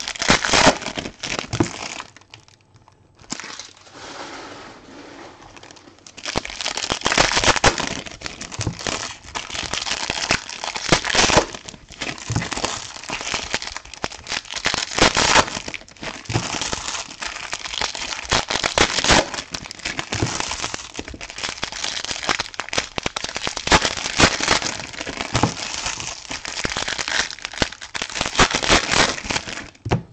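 Silver foil trading-card pack wrappers crinkling as they are handled and opened by hand, with a quieter lull a few seconds in.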